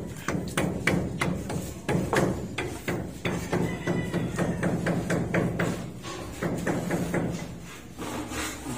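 Hammering at a building site: sharp, irregular hammer strikes, several a second, over a steady low machine hum.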